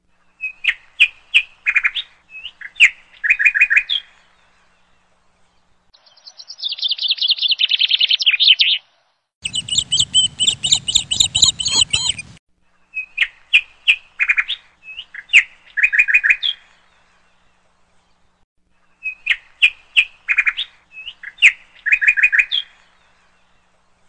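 Bird chirping in phrases of quick, high chirps separated by silences, the same phrase coming back three times. A fast trill comes about six seconds in, and a noisier stretch with chirps follows around ten seconds in.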